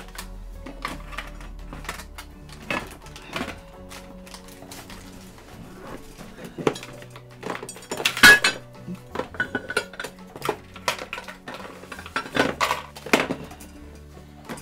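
Paintbrush clinking and tapping against a ceramic palette dish while paint is mixed, a scattered run of sharp clinks with the loudest about eight seconds in.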